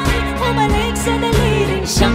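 A woman singing Tagalog lyrics over an electric guitar, with bass notes and a steady beat underneath.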